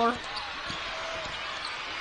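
A basketball dribbled on a hardwood court, a few faint bounces over the steady murmur of an arena crowd.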